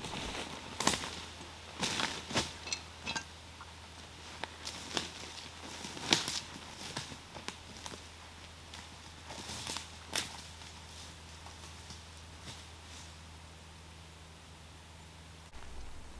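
Footsteps crunching through dry leaf litter and twigs on the forest floor, irregular and thinning out as the walker moves away. By about ten seconds in they have died away to a faint steady background.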